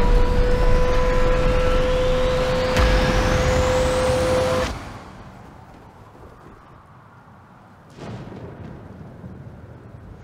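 Film storm sound design: heavy wind and low rumble under a steady held tone, with a high whistle rising slowly over it. About five seconds in it all cuts off at once, leaving a much quieter low storm ambience that swells slightly near the end.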